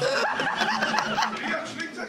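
Theatre audience laughing at a joke, a dense wash of many people's laughter that eases near the end, with a man chuckling close to the microphone over it.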